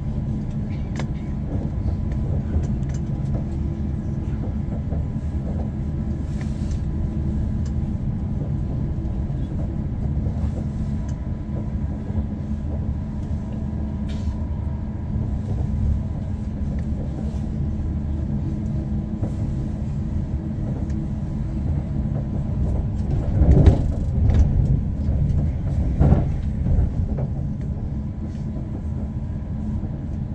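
Cabin running noise of an Elizabeth line Class 345 electric train at speed: a steady low rumble with faint steady tones. It swells louder twice near the end.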